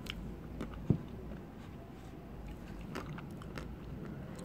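A person chewing a mouthful of ice cream studded with small, thin chocolate hearts, with a few faint crunchy clicks from the chocolate. There is one short, sharper knock about a second in.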